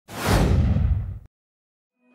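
A whoosh transition sound effect: a single swoosh of about a second whose top end fades first so it seems to fall in pitch, cutting off suddenly.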